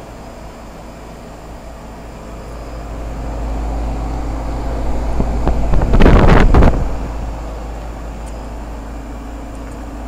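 Goodman heat pump outdoor unit with a Copeland scroll compressor, running in cooling mode: a steady hum of the compressor and condenser fan. It grows louder as the microphone comes close to the fan grille, peaking in a rough rush of fan air for about a second around six seconds in, then settles back to the steady hum.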